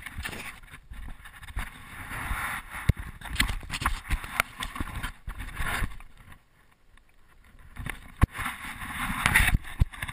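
A GoPro being handled and carried by hand: rubbing and fumbling noise against the camera housing, with scattered sharp knocks. It comes in two bursts, with a quieter stretch about six seconds in.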